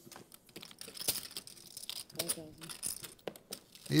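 Poker chips clicking and clattering as a bet is pushed into the pot, an uneven run of sharp clicks, with faint talk at the table.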